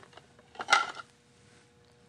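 Porcelain clinking as a ceramic ladle knocks against a porcelain soup tureen, a short cluster of sharp clinks with a little ringing about half a second in, after a few faint clicks.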